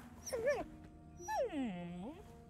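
Animated dragon whimpering: a short cry rising and falling in pitch about half a second in, then a longer moan that slides steadily downward as the dragon sinks her head to the ground. The weak, falling cries voice the dragon's sickness from a festering bite.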